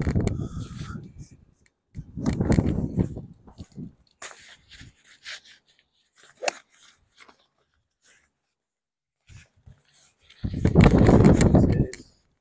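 Gusts of wind buffeting the microphone with a low rumble, three times. About midway there is a single sharp click of a golf club striking a range ball.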